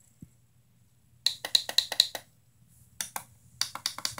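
A quick run of light clicks or taps, about eight in a second, starting about a second in, then more short runs of clicks near the end.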